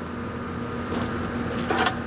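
Keys jangling faintly over a steady low hum, with a short louder sound near the end.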